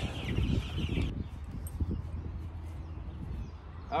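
Baby chicks, about two weeks old, peeping in a brooder, a thin high chorus that cuts off abruptly about a second in. After that only a low rumble of wind on the microphone remains.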